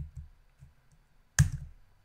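Computer keyboard: a couple of faint taps, then one sharp, loud keystroke about one and a half seconds in as a terminal command is entered to run a script.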